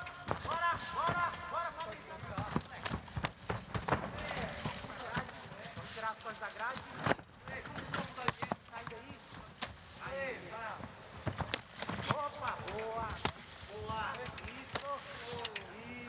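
Men shouting short calls, typical of cornermen during a cage fight, over scattered thumps and slaps of fighters' bodies and bare feet on the canvas.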